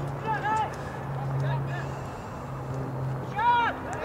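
High-pitched voices calling out at a soccer game: a short call just after the start and a louder, rising-and-falling call near the end, over a steady low hum that fades out about three seconds in.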